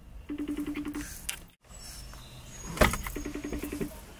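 A car's electric power-seat motor buzzes in two short runs, about a second in and again near the end, as the seat is moved back. A single sharp click comes between the runs.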